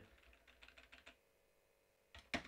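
Faint typing on a computer keyboard: a quick run of keystrokes in about the first second.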